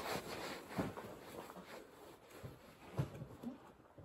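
Faint rustling and a few soft knocks, one about a second in and another near three seconds: a shooter's clothing and hands shifting against a bolt-action rifle on a rest as he settles in to aim. No shot is fired.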